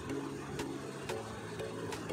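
Chef's knife slitting green chillies lengthwise on a wooden chopping board, the blade tapping the board a few times, over quiet background music.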